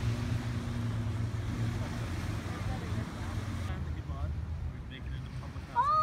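Outdoor waterfront ambience: a steady low engine-like rumble with a hiss of wind and surf. The hiss thins suddenly about two-thirds of the way through.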